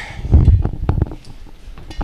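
Handling noise on a handheld microphone: a cluster of heavy low thumps about half a second in, then scattered light clicks and knocks.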